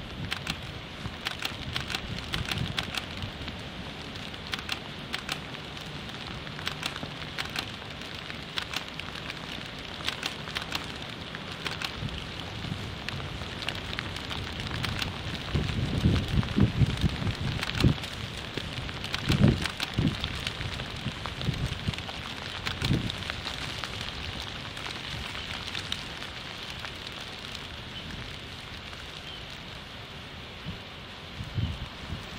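Eurasian beavers gnawing and chewing on branches, heard as irregular crackling clusters of small crunching clicks over a steady hiss of flowing river water. From about halfway through, several seconds of low thuds and rumbling bursts are the loudest part.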